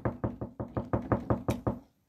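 Rapid, even knocking, about eight knocks a second, stopping shortly before the end.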